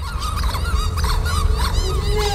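Music-video soundtrack: a heavy, rumbling bass under a quick run of short, squeaky honk-like squeals, cartoonish creature noises from fighting stuffed-animal puppets.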